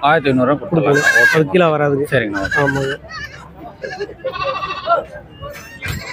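Goat kids bleating, with one longer bleat about halfway through, over a man talking loudly in the first half.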